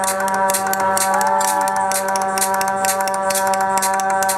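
Live music from a duo of stringed instrument and drum kit: one long held note over a steady low drone, with quick cymbal strikes throughout.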